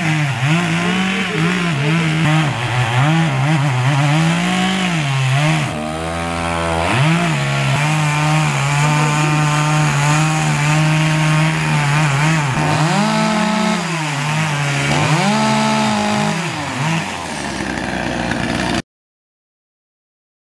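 Two-stroke chainsaw cutting into the base of a gum tree trunk, running at high revs under load. Its pitch sags and climbs back several times as the cut goes on, and the sound cuts off abruptly near the end.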